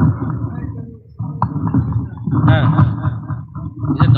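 A man's voice preaching loudly into a microphone in emphatic, partly sing-song phrases, with a short pause about a second in.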